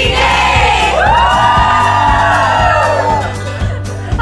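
A group of people cheering and whooping over background music with a steady bass. One long held shout or note runs from about a second in until just past three seconds, then fades.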